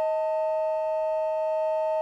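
Piano accordion holding two notes together, a higher note over a lower one, sustained steadily.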